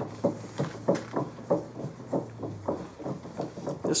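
Bench vise being tightened on a part: a run of light, evenly spaced clicks, about three a second, over a faint steady hum that stops about two-thirds of the way through.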